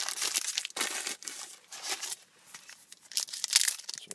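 Trading-card pack wrapper crinkling and tearing as it is handled and opened, in irregular crackly bursts.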